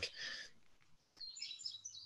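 Faint bird chirps in the background: a series of short, high notes in the second half, with the room otherwise quiet.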